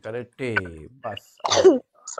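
A man's voice speaking in short phrases, with one rougher, noisier stretch near the end that may be a throat clear.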